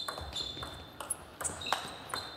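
Table tennis rally: the ball is struck back and forth between rubber-faced bats and bounces on the table, a quick run of sharp pings about three a second, some ringing briefly.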